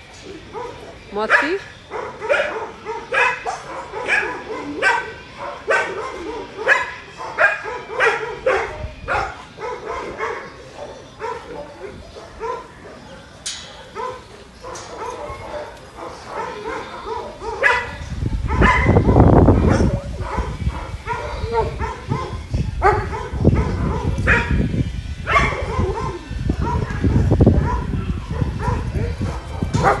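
A dog barking over and over, about two barks a second. From about eighteen seconds in, a loud low rumbling noise on the microphone takes over, with the barks coming more sparsely.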